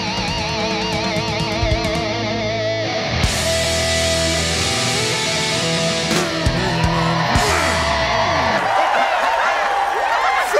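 Live rock band with distorted electric guitars, bass and drums playing loudly, in a hard-rock style. Held guitar notes with a wide vibrato come first, then sustained full-band chords with drum hits. The band stops about nine seconds in.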